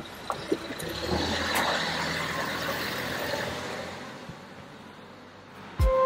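A road vehicle passing by on the street: a rushing noise with a low rumble swells over the first couple of seconds, then fades away. Music starts with a low thump just before the end.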